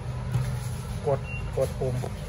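Steady low hum of refrigeration equipment from the drinks cooler, with two short spoken words over it.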